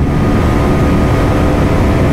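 Bajaj Pulsar NS400Z's 373cc single-cylinder engine running steadily near top speed in sixth gear at about 160 km/h, with heavy wind rush buffeting the microphone.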